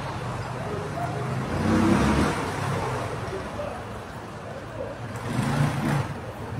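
Street traffic: a motor vehicle passes about two seconds in, over a steady low rumble of traffic, and another swell of traffic noise comes near the end.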